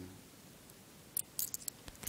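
A brass push-up lighter being fumbled in one hand in a failed try at sliding it open: a few faint, short metallic clicks and scrapes a little after a second in, then one sharper click near the end.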